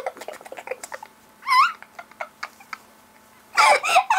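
Women laughing: a short, high, rising squeal of laughter about a second and a half in, soft breathy clicks around it, then loud laughter breaking out near the end.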